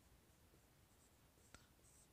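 Near silence: a marker writing faintly on a whiteboard, with one faint tick about one and a half seconds in.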